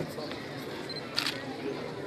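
A still camera's shutter clicks once, a little over a second in, over a steady murmur of crowd voices.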